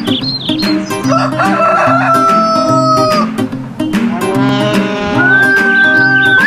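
Rooster crowing twice over light background music: one long crow about a second in and another near the end that rises and drops off.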